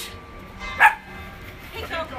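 A small dog barks once, a short sharp bark about a second in.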